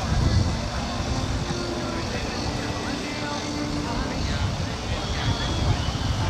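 Radio-controlled model BAE Hawk jet taxiing, its engine running steadily, with people talking in the background and wind rumbling on the microphone.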